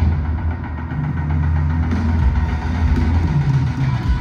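A rock concert's sound system in a stadium holding a loud, deep bass drone, with a few held low notes that shift partway through.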